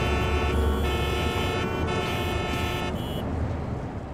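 City road traffic with car and bus horns honking in long, overlapping blasts over a steady rumble of engines. The horns break off briefly a few times.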